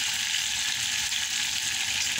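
Chopped onion, tomato and hot pepper sizzling steadily in hot oil in a pot.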